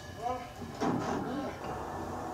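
Short vocal sounds from the episode's fight scene playing over the room, with a sharp noisy sound just under a second in.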